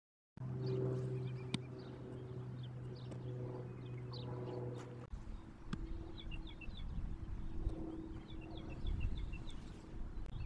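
Outdoor ambience with small birds chirping throughout, over a steady low hum that cuts off abruptly about five seconds in. A few sharp clicks stand out, one near a second and a half in and one just under six seconds in.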